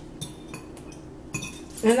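Metal forks and spoons tapping and scraping lightly against ceramic bowls as two people eat, a few soft clinks.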